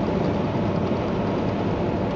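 Steady in-cab drone of a semi truck cruising at highway speed: engine and tyre noise, mostly a low rumble.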